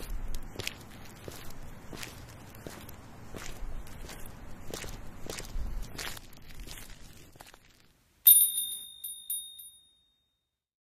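Footsteps on wet pavement at a walking pace, a little more than one step a second. Near the end, a small bright bell chimes with a few quick strikes and rings out.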